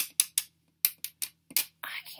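Plastic beads of a necklace, which look like stone, clicking against each other and against a hard surface as the necklace is handled: about seven short, sharp clicks.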